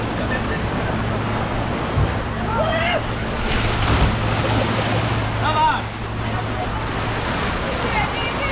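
Steady rush of water flowing down an open water slide into its splash pool, with wind on the microphone and a low hum that stops near the end. Two brief high voices call out, about a third and two-thirds of the way through.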